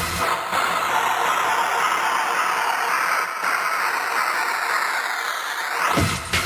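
Breakdown in a hardcore techno DJ mix: the kick and bass drop out and a loud white-noise sweep with a phaser-like swirl fills the gap, sliding slowly down and then swooping up sharply at the end.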